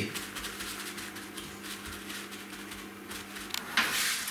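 Faint rustle of a paper towel dabbing a cooked steak dry on a wooden board, over a steady low hum, with a sharp click near the end.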